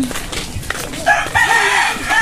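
A rooster crowing: one long, held call that starts about a second in.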